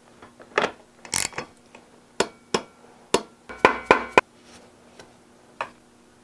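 Sharp metal clicks and knocks as bicycle crankset parts and tools are handled and fitted at the bottom bracket. About a dozen separate strikes, some ringing briefly, with a quick cluster of several near the four-second mark.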